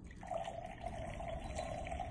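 Water gulped down from a drinking glass, a steady liquid sound that starts a moment in and holds one even pitch.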